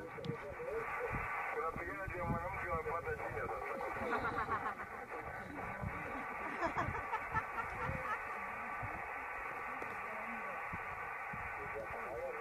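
Faint, muffled voices of people talking in the background, over low rumbling noise.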